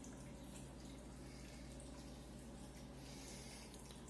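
Faint, steady trickle of water from an aquarium filter, with a low steady hum underneath.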